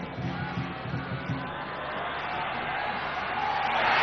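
Football stadium crowd noise, growing steadily louder toward the end as a late set piece is played into the penalty area.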